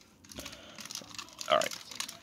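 Plastic clicks, creaks and rustles from a Transformers Masterpiece Grimlock figure being handled, its joints moved as it is stood upright. A brief voice sound comes about one and a half seconds in.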